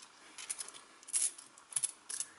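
20p coins clicking against each other as they are picked up and slid about by hand on a towel: a few light, separate clinks, the loudest a little after a second in.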